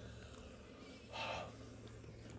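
A short, faint breathy exhale about a second in from a person whose mouth is burning from ghost pepper jerky, over a steady low hum.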